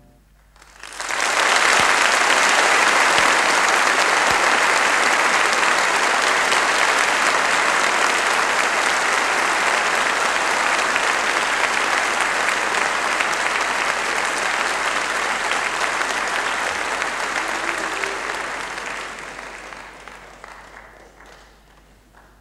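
Audience applauding at the end of a piano piece. The clapping starts abruptly about a second in, holds steady, then dies away over the last few seconds.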